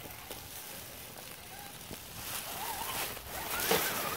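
Dry leaf litter crunching and rustling in a few short bursts, the loudest near the end.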